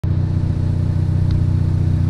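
Ford Focus ST's turbocharged four-cylinder engine idling steadily with an even low hum.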